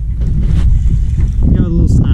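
Wind buffeting the microphone of a camera on an open boat, a steady low rumble, with a brief bit of voice near the end.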